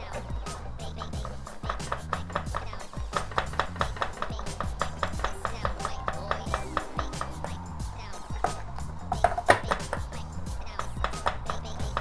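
A whisk beating egg yolks and lemon juice in a stainless steel bowl over a water bath, the wires ticking against the metal about four or five times a second: hollandaise being whisked continuously as it cooks.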